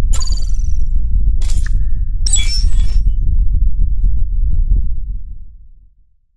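Logo intro sting: a loud, deep bass rumble with sharp, glittering high-pitched effect hits at the start, at about a second and a half and again around two and a half seconds, then fading out near the end.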